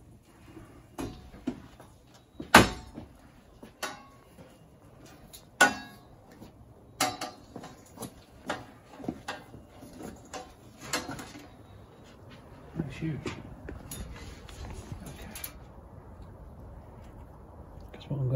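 Irregular sharp knocks and clatters, about a dozen in the first twelve seconds, then quieter: a patio door being opened and a large copper-pipe loop antenna knocking about as it is carried through the doorway.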